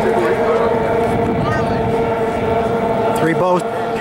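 Racing outboard motors on a pack of stock outboard runabouts running flat out, a steady high whine that holds its pitch. A man's voice comes in near the end.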